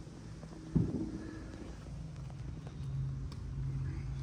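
Electric drivetrain of a Razor MX350 mini dirt bike converted to a 48 V MY1020 1000 W brushed motor with chain drive, running as a steady hum that grows stronger after about three seconds. A sharp knock comes about three-quarters of a second in.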